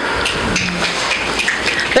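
Audience in the hall making a dense, steady patter of scattered claps and finger snaps, about as loud as the poet's voice.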